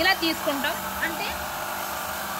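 Electric motor of a stone-bead cutting machine running with a steady hum, with a voice briefly over it in the first second.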